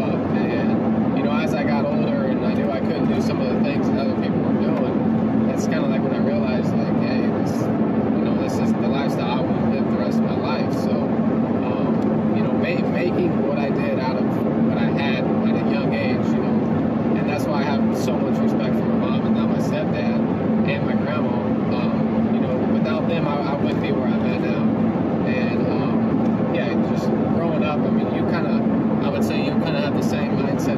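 A man talking inside a moving car's cabin, over a steady engine and road drone.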